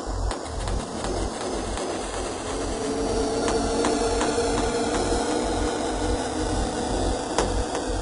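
Deep, dark psychedelic techno: a droning synth pad under noisy textures and sharp clicks, with the kick drum pulse held back through the middle and coming back in full near the end.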